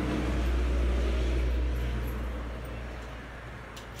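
Low, steady rumble of a vehicle engine running nearby, fading away over the last second or so.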